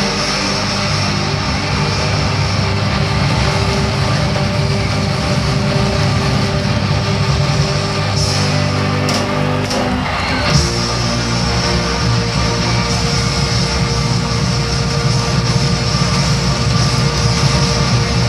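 Rock music with electric guitars playing held chords, which change about ten seconds in.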